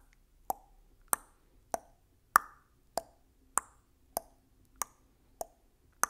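Ticking countdown-timer sound effect: short hollow tick-tock clicks, a little under two a second, alternating between a higher and a lower pitch.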